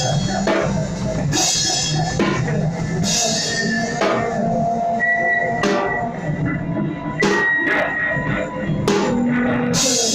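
Acoustic drum kit played hard and heavy, with drum hits and several loud cymbal crashes, over a few sustained pitched notes.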